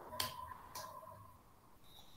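Two faint keystrokes on a computer keyboard, about half a second apart, while text is typed.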